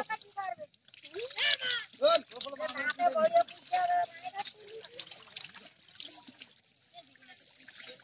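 Several people's voices calling out over the slosh and trickle of shallow muddy water as people wade and grope through it by hand. The voices drop away about halfway through, leaving quieter splashing and small sloshes.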